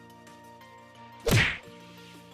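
A single loud hit sound effect about a second and a quarter in, marking the slide change to a countdown number. It plays over soft background music of steady held notes.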